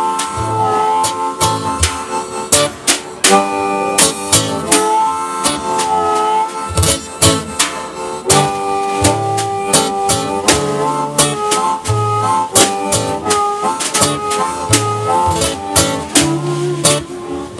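Live harmonica solo played into a microphone, with held and bent notes, over a strummed acoustic guitar and a drum kit keeping a steady beat.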